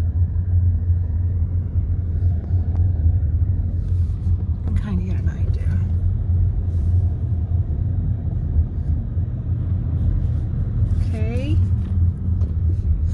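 A car driving, heard from inside the cabin: a steady low rumble of road and engine noise.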